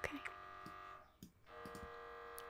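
MRI scanner running a T2 fast spin echo sequence: a quiet, steady buzzing tone of several pitches that cuts out briefly about a second in and then starts again.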